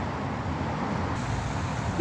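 Road traffic: a steady, low rumble of cars passing on the road.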